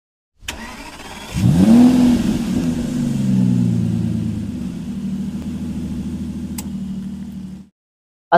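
A car engine starting: after a click, it catches a little over a second in with a quick rising rev, then settles to a steady idle. The sound cuts off just before the end.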